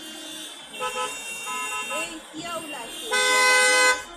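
Vehicle horns honking in heavy city traffic: one horn sounds for about a second near the start, and a louder horn blast of just under a second comes near the end.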